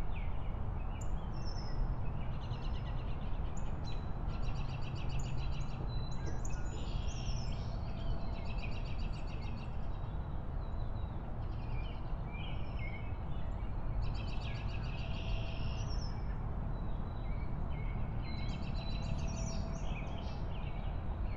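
Outdoor ambience: a steady low rumble with small songbirds singing rapid trills every few seconds.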